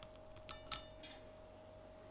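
A metal fork clinking lightly against a plate as bacon is moved onto it: two clinks about half a second in, then a few fainter ticks. A faint steady hum sits underneath.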